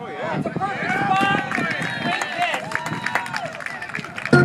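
Several voices at a baseball game shouting and cheering at once, overlapping calls that rise and fall for about three and a half seconds after a batter's swing.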